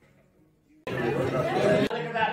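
Near silence, then indistinct chatter of several voices from about a second in, cut off suddenly near the end.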